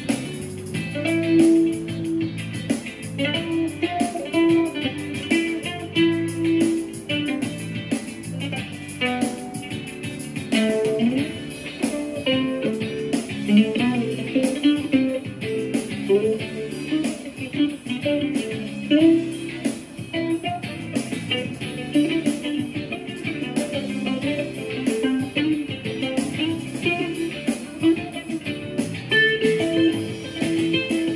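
Ukulele played as a picked lead line over a backing track of sustained lower chords and bass notes.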